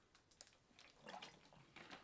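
Faint sounds of a man drinking water from a plastic bottle, with a few soft clicks and a brief low sound about a second in.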